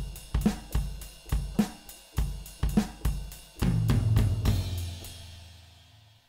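Sampled drum kit from FL Studio's FPC plugin, triggered from a MIDI keyboard: a steady beat of kick, snare and hi-hat. About three and a half seconds in it ends on a cymbal crash with a low note ringing under it, both fading away.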